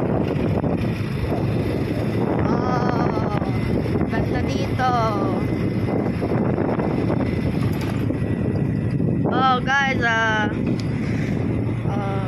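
A vehicle's engine running steadily as it drives along, with wind buffeting the microphone. A person's voice breaks in briefly a few times, longest about nine to ten seconds in.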